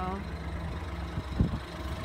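A 2014 Ford Escape's engine idling with a steady low hum, and one short low thump about a second and a half in.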